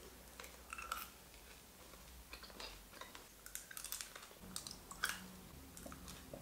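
Faint chewing of a mouthful of Skittles candies, with scattered soft clicks of the mouth and candy shells.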